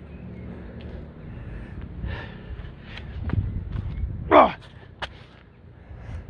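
Hard, gasping breathing of a man doing burpees in a weighted vest, with dull thuds of his body on the ground mat. The loudest sound, about four seconds in, is a short, sharply falling gasp.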